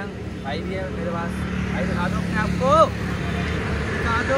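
Indistinct voices and short pitched calls, one louder call rising and falling nearly three seconds in, over a steady low rumble of traffic or an idling engine.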